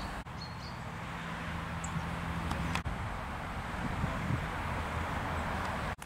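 Steady outdoor background noise with a low rumble, broken by two brief dropouts, about a quarter of a second in and near the middle. A faint low steady hum runs for about two seconds in between.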